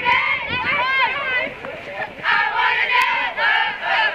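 Cheerleaders shouting a cheer, several high voices yelling together, with a brief dip about halfway through.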